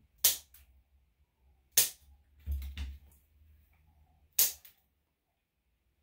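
Dog nail clippers snipping through a dog's claws: three sharp snaps, roughly two seconds apart, with a few fainter clicks and a low bump in between.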